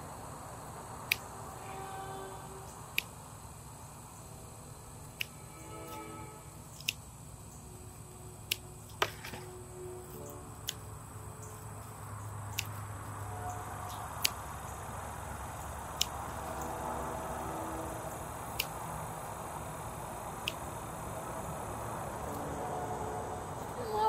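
Hand pruners snipping zinnia stems while deadheading spent flowers: about a dozen sharp single clicks, one cut every second or two, over a faint outdoor background.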